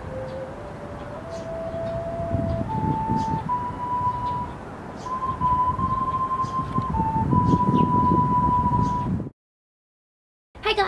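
A slow melody of single held, pure-sounding tones that step upward in pitch and then hover around one high note, over a low rumbling noise. It cuts off abruptly near the end.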